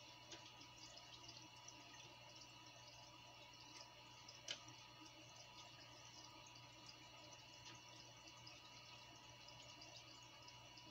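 Near silence: faint water in a small fish tank, a low steady hum with light drips and ticks, and one sharper click about four and a half seconds in.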